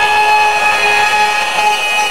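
A steady high-pitched squeal of public-address feedback: one pitch with its overtones, held without wavering.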